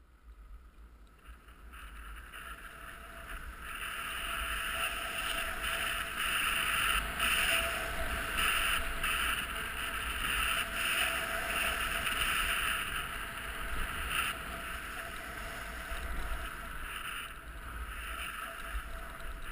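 Sliding down a firm, hard-packed groomed snow slope: a steady hiss and scrape of the gliding surface on the snow. It grows louder over the first few seconds as speed builds, with a low wind rumble on the microphone.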